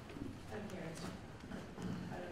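Faint, indistinct voices in a meeting room, with a few light knocks.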